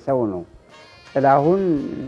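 Speech: an elderly man talking, pausing briefly for about half a second just before the middle.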